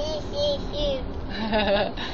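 A toddler's voice making three short sing-song notes, then a laugh about one and a half seconds in.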